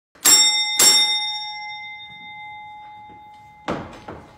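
Doorbell on an old wooden front door rung twice, about half a second apart, the metallic ring dying away over a couple of seconds. Near the end the door latch clicks as the door is opened.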